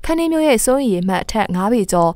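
A woman's voice speaking steadily in news narration, only speech heard.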